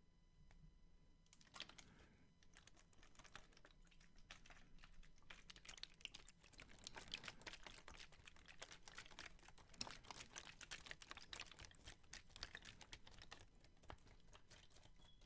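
Thin disposable plastic water bottles, partly filled, crinkled and squeezed in the hands close to the microphone: a faint, dense run of irregular crackles and clicks that starts about a second and a half in and grows busier.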